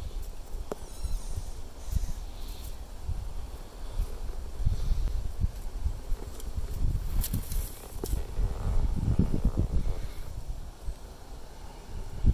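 Outdoor ambience: an irregular low rumble of wind gusting on a phone microphone, with leaves rustling and a few handling clicks.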